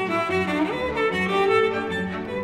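Solo cello with string orchestra accompaniment playing a slow melody, with a note sliding up into a held pitch a little under a second in.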